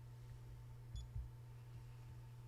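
Quiet room tone with a steady low hum. About a second in come two soft low thumps in quick succession, the first with a brief faint high blip.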